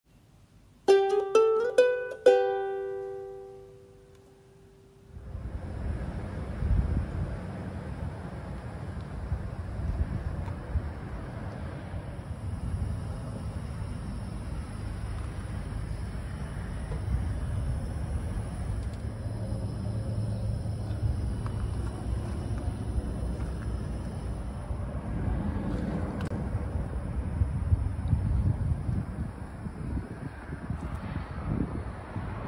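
A short plucked-string jingle, four or five quick ukulele-like notes ringing out and fading. From about five seconds in, a steady low rumble of wind on the microphone, with a faint low hum beneath it.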